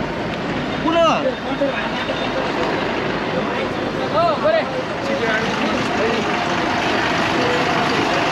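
Busy street noise of vehicles running around a bus, with short shouted calls from people: one about a second in and two quick ones a few seconds later.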